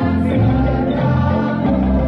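Choral music: a group of voices singing held chords that change every second or so.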